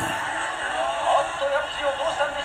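Sound from a 1970s boxing anime playing back: a thin, high-sounding voice-like sound with wavering pitch and almost no bass.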